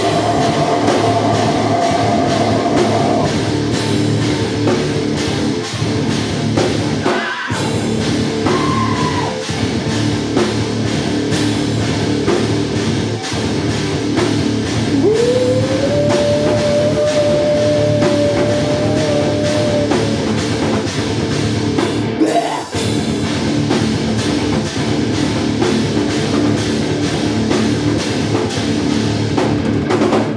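A metal band playing live: distorted electric guitars, bass and a pounding drum kit, with two brief stops about 7 and 22 seconds in. About 15 seconds in, a long note slides up and is held for about five seconds.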